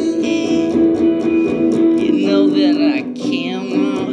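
Electric guitar played solo, a picked melodic line of sustained single notes, some wavering in pitch in the second half.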